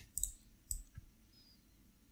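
A few faint, short computer mouse clicks in the first second, then quiet room tone.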